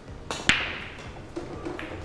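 A 9-ball break shot on a pool table: the cue tip clicks against the cue ball, and a moment later the cue ball smashes loudly into the diamond-shaped rack with a ringing crack, followed by scattered clicks of the balls spreading across the table.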